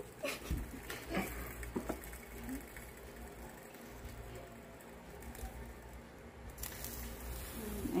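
Electric waffle maker's hinged plastic lid being lifted with a few faint clicks and small knocks, then a fork working under the cooked waffle on the nonstick plate to free it where it has stuck.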